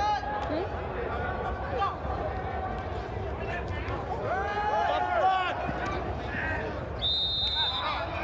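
Men shouting and calling out during a flag football play inside an air-supported sports dome, over a steady low hum. A single whistle blast of under a second sounds near the end.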